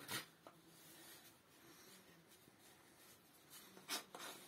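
Knife blade shaving wood by hand: a short scraping stroke at the start, a fainter one about half a second in, then near quiet until another stroke at the very end.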